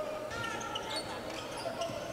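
Basketball game sound in a gym: the ball is dribbled on the hardwood court and short sneaker squeaks come through. Crowd voices murmur behind.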